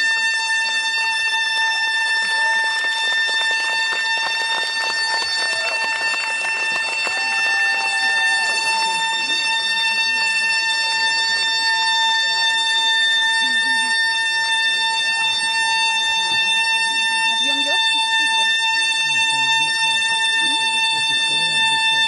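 A loud, steady high tone held unbroken throughout, with faint wavering pitched sounds beneath it.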